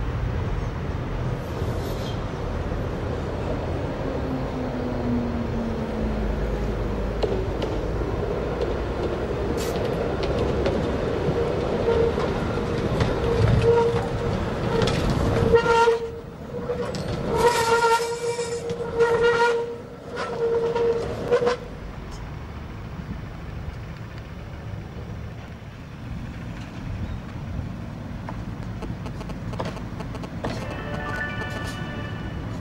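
RVZ-6 two-car tram running past close by, its running gear rumbling on the track. A steady high tone with overtones rises over the rumble and breaks midway into several loud short notes as the tram goes by, then the sound falls away to a quieter rumble.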